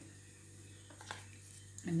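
Quiet room tone with a steady low hum, and a few faint clicks about a second in from hands handling a small sugar-paste figure and picking up a modelling tool. A woman starts to speak at the very end.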